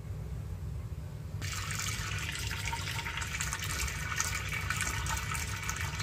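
Tap water running into a stainless steel pot, starting suddenly about a second and a half in and running steadily, over a steady low hum.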